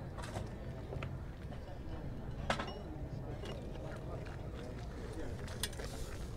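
Open-air market background: a steady low rumble with faint voices, and a few sharp clicks, the loudest about two and a half seconds in.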